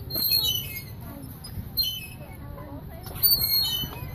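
Playground bucket swing squeaking on its metal chain hangers as it swings back and forth: three short high squeaks falling in pitch, about a second and a half apart.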